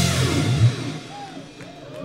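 Live rock band (electric guitars, bass and drum kit) finishing a song: a last hit about half a second in, then the final chord rings out and dies away over the next second.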